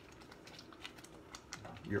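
A wooden spoon stirring thick, simmering orzo in a stainless steel pan: faint, irregular small clicks and pops from the spoon and the bubbling sauce.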